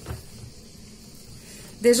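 Wire balloon whisk beating thick chocolate-coffee cake batter in a plastic bowl: a soft, steady swishing.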